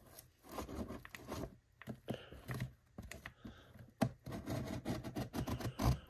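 Cardboard mailing box being handled, with irregular scrapes, taps and rustles; near the end a kitchen knife is set against the box's edge to start cutting it open.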